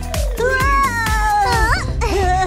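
A cartoon dragon's drawn-out vocal cry, starting about half a second in, its pitch sliding gently down and then rising sharply near the end, over upbeat background music with a steady beat.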